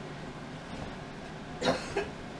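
Low background hiss, then a single short cough near the end.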